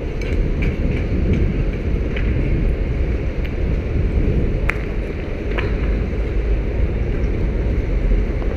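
Outdoor street ambience: a steady low rumble with a few faint sharp clicks.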